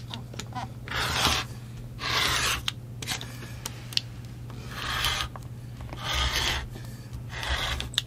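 Rotary cutter rolling through layered cotton quilt fabric along the edge of an acrylic ruler on a cutting mat, in five short strokes of under a second each as the block is trimmed square, with a few light clicks between them.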